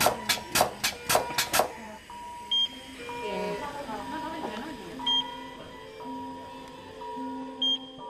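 LUCAS mechanical chest-compression device pumping in a steady rhythm of about three strokes a second, then stopping just under two seconds in as resuscitation is halted. After it stops, steady electronic monitor tones remain, with a short high beep about every two and a half seconds.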